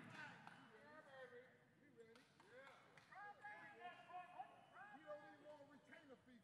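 Near silence, with faint voices of people talking in the background.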